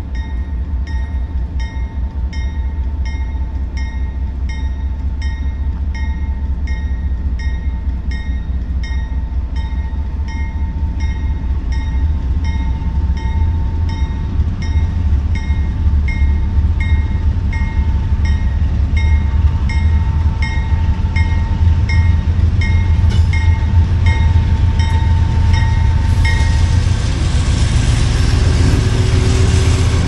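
CSX freight train's diesel locomotives approaching, their low engine rumble growing steadily louder. A bell rings evenly about one and a half strikes a second and stops near the end, as the locomotives come close and their running noise swells.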